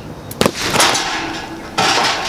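A low-impact micro-explosive charge, set off by a compressed-air firing device, blasting a drilled rock: a sharp bang about half a second in, then a second of rushing noise. Another sudden loud burst of noise comes near the end.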